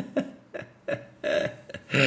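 A man's stifled laughter: a string of short chuckles in quick bursts, without words.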